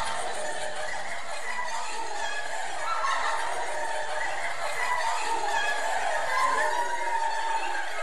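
Evil, demonic laughing from a horror film's end-credits soundtrack: several wavering, cackling voices overlapping at a steady level.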